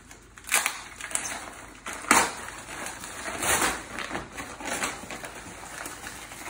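A plastic mailing bag being torn open by hand: crinkling and tearing in a string of short bursts, the loudest about two seconds in.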